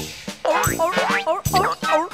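Children's cartoon music with about four quick swooping sound effects in a row, each dipping down and springing back up in pitch.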